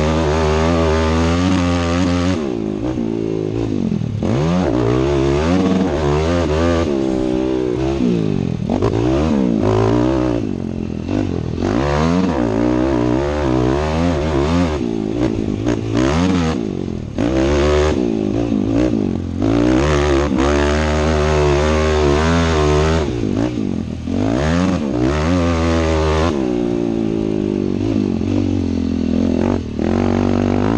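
Yamaha motocross bike's engine revving hard through laps of a dirt track, its pitch climbing and falling over and over as the throttle is opened and rolled off, with a few brief drops in loudness. Heard close up from a helmet-mounted camera.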